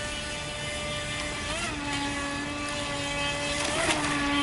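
Radio-controlled model boat's motor running at speed with a steady high whine, its pitch briefly rising and falling about a second and a half in and again near the end as the throttle changes, getting louder toward the end.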